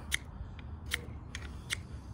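The spine of a carbon-steel knife scraped down a ferro rod in about five short, sharp strikes, irregularly spaced. The spine is barely catching the rod, so few sparks are thrown.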